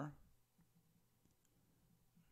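Near silence: faint clicking and scratching of a pen writing on paper over a low steady hum.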